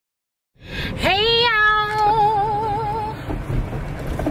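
A woman's voice singing one long note about a second in. It slides up into pitch, holds, then wavers in an even vibrato before fading out after about two seconds, over the low rumble of a car cabin.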